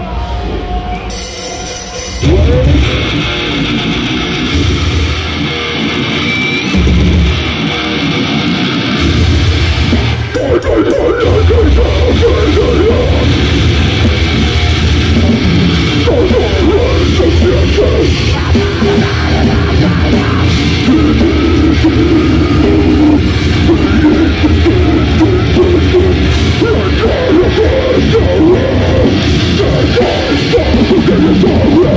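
A death metal band playing live with heavily distorted guitars and drums. It starts softer and builds, reaching full volume about ten seconds in.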